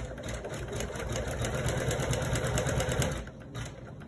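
Janome computerized embroidery machine stitching, its needle going up and down in a rapid, even rhythm; the sound drops in level about three seconds in.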